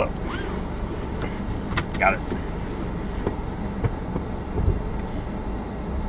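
Car seatbelt buckle latching with a sharp click a little under two seconds in, over the steady low hum of the car cabin.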